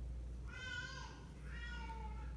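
A domestic cat meowing faintly twice in the background: a high call with a falling pitch about half a second in, and a softer one near the end.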